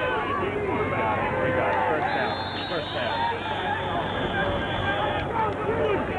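Many voices talking and calling out at once, an overlapping babble of spectators with no single voice clear.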